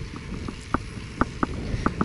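Bicycle being ridden, heard from a camera mounted on the bike: a low rumble of tyres and wind with scattered light clicks and rattles from the bike, irregular, about three a second.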